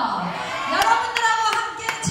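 A woman's voice over a PA system, sliding down in pitch and then held, with sharp hand claps in an even rhythm, about three a second, in the second half.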